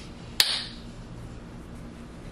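A single sharp click about half a second in, with a brief hiss trailing after it, then quiet room tone.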